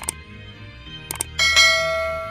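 Subscribe-button sound effects over background music: a quick double click at the start, another double click just past a second in, then a bell chime that rings on and fades.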